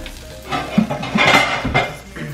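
Beef hamburger patty sizzling in a griddle pan. From about half a second in, the sizzle swells loud for over a second, with a few dull knocks.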